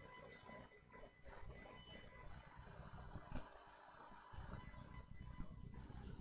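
Near silence: faint room tone with a low rumble that grows a little louder about four seconds in, and a faint steady electronic whine.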